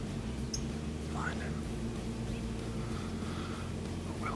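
A person whispering softly over a steady low hum, with a few short high chirps.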